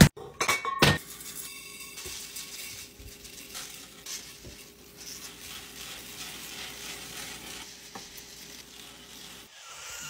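Laundry scent booster beads poured from a plastic bottle into a glass jar: a steady pattering hiss of small beads falling and settling. The glass jar clinks sharply a couple of times in the first second.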